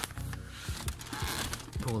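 Background music, with a scraping, rustling sound of plastic center console trim being handled and pulled at by hand during the second half.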